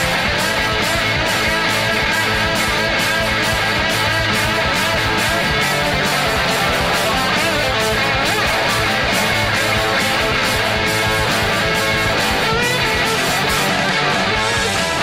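Instrumental passage of loud, fast heavy metal: distorted electric guitars and bass over a steady drum beat, with a lead guitar line wavering up and down in pitch and no vocals.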